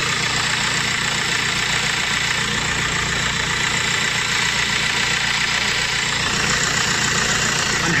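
Audi A4 B7 2.0 TDI four-cylinder diesel idling steadily, heard close to the alternator, with the scratchy rasp the mechanic traces to the alternator and takes for a failing alternator bearing.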